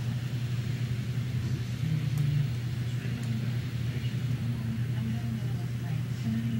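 A steady low hum throughout, with a brief slightly higher tone joining it about two seconds in.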